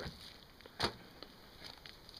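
A single short, sharp knock a little under a second in, with faint handling noise around it.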